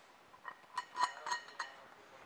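Metal clinks as a steel hook is fitted onto a steel lifting bar: about six light clicks and taps between half a second in and near the end, each ringing briefly.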